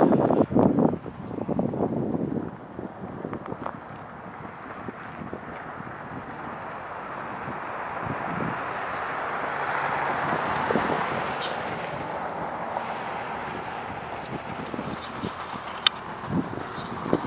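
Wind on the microphone, under a steady rushing noise that slowly swells, peaks about ten seconds in and fades again: a vehicle passing on the nearby road.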